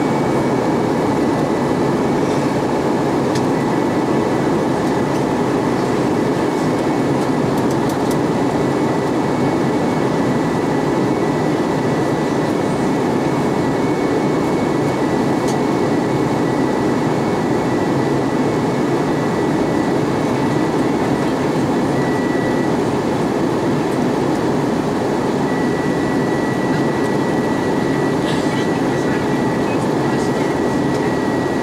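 Cabin noise of an Airbus A320-232 in flight, heard from a window seat beside its IAE V2500 engine: a loud, even rush of air and engine noise with a thin, steady high-pitched tone held over it.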